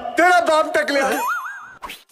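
A short, pitched vocal sound effect whose pitch bends up and down, then turns into a single wavering tone that glides upward and wobbles, like a cartoon boing. It fades out near the end.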